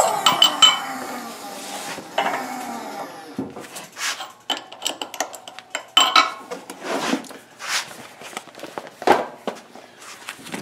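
Handling noise at a shop hydraulic press: a string of knocks, clinks and scrapes as the bottle jack is let down and the dense rubber molding pads are shifted to slide out the pressed leather holster.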